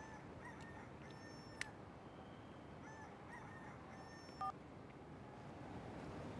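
A mobile phone playing a short electronic ringtone melody of chirpy tones, faint. The phrase plays twice, with a brief sharper two-note beep near the end.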